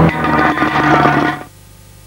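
The tail of a TV advert's soundtrack, loud with a clattering texture, cuts off about a second and a half in and leaves a short, quiet gap between adverts.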